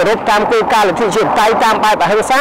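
A man talking without pause, in Khmer.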